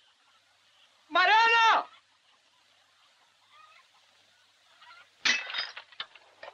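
A loud, drawn-out call, rising then falling in pitch, heard once, then near the end a sudden crash followed by a brief clatter.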